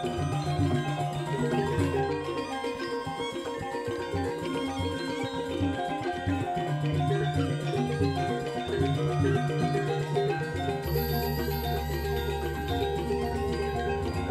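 Balinese gamelan ensemble playing a dense, interlocking piece: bronze kettle gongs (reyong) and metallophones struck with padded mallets, with kendang drums and bamboo flutes. A deep sustained low tone comes in about eleven seconds in.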